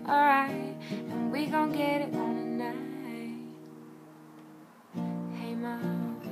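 Acoustic guitar strummed under a woman's singing voice for about the first two seconds; then a chord rings out and fades away, and strumming starts again about five seconds in.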